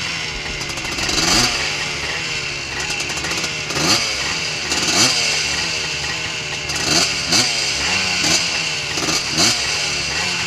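Two-stroke three-wheeler engines idling, with quick throttle blips that rise and fall again about every second or two.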